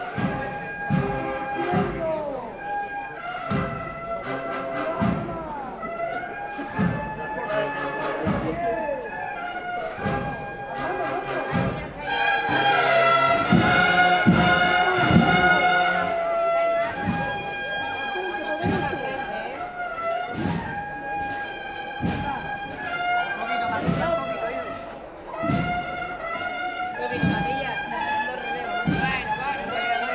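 Cornet and drum band playing a processional march: cornets holding a melody over a steady drum beat, swelling to its loudest passage about twelve to sixteen seconds in.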